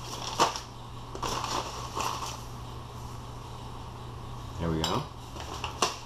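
A metal spoon scooping sugar and tipping it into a small stainless steel bowl: light clinks of spoon on steel and a grainy rustle, with a sharp clink about half a second in and another near the end.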